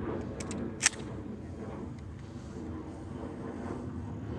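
A few short metallic clicks from handling a shotgun, the sharpest and loudest just under a second in, then only a low steady outdoor background as the gun is raised to the shoulder.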